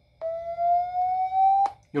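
A Redmi Note 8T's loudspeaker playing MIUI's speaker-cleaning tone, which uses sound to shake dust out of the speaker and earpiece. It is one steady tone that rises slowly in pitch for about a second and a half, then cuts off suddenly with a click.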